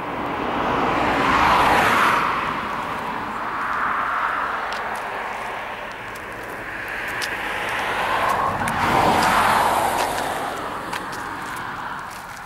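Cars passing by on the road one after another, the tyre and engine noise swelling and fading away, loudest about two seconds in and again about nine seconds in.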